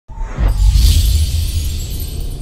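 Logo intro music sting: a deep bass rumble with a bright, shimmering swoosh that swells about half a second in.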